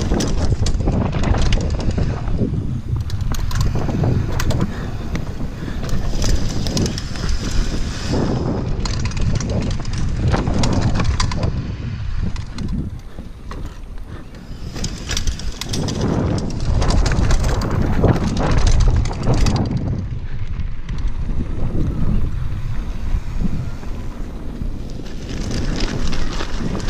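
Mountain bike ridden fast down a dirt forest trail: wind buffeting the microphone over the rumble of knobby tyres on the dirt and rattling of the bike over bumps. It grows louder and quieter in stretches.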